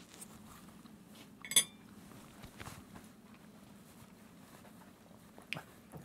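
Quiet eating with forks: faint chewing, one bright metal clink of a fork about one and a half seconds in, and a small tap near the end.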